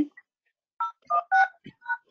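Telephone keypad touch-tones (DTMF) coming through a conference-call line: about four short beeps in quick succession, each a pair of pitches, as a caller keys in an access code or PIN to join the call's audio.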